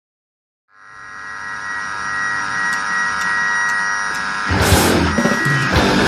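Powerviolence hardcore recording: a steady buzzing drone fades in and swells for a few seconds, then the band comes in with drums and heavily distorted electric guitar about four and a half seconds in.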